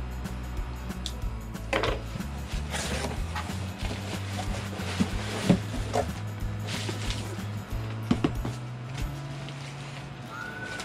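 Cardboard shipping box being cut open and unpacked. There are a few short scraping swishes of cardboard and tape, and light knocks as a smaller inner box is lifted out, over background music.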